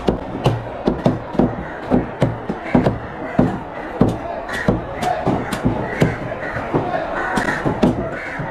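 Heavy cleaver chopping through trevally fish and striking a wooden log chopping block: sharp chops in an irregular run, about two a second.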